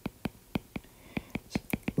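Stylus tapping and clicking on a tablet screen during handwriting: an irregular run of short, sharp ticks, about five a second.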